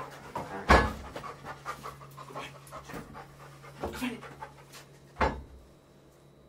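Spaniel police dog panting, breath after breath, with two sharp knocks: a loud one near the start and another about five seconds in.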